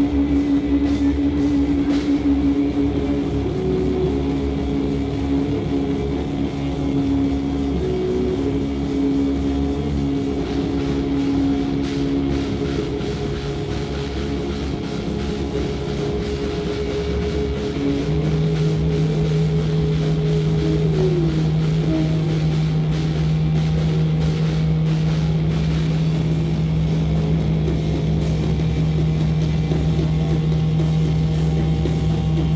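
Live doom-metal band: guitars and bass hold long sustained notes over drums and cymbal hits. A lower note takes over a little past halfway, and a higher held note slides down soon after.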